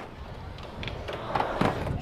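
A person drinking from a plastic bottle, gulping, with a sharp click right at the start.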